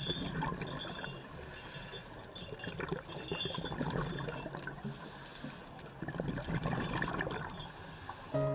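Water splashing and gurgling in many small, irregular splashes as a crowd of koi jostle at the pond's surface.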